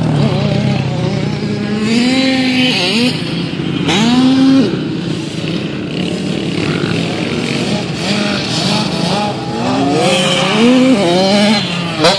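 Small two-stroke youth motocross bikes revving on a dirt track: the engine pitch climbs several times as the throttle opens, then drops off sharply when the rider lets off, with a lower steady engine note underneath.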